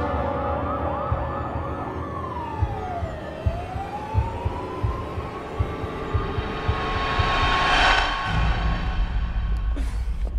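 Emergency vehicle siren in a film sound mix: a fast warbling yelp that turns about two seconds in into a slow wail, falling in pitch and then rising again. Under it run low irregular thumps, and near the end a swelling whoosh builds and cuts off abruptly into a low rumble.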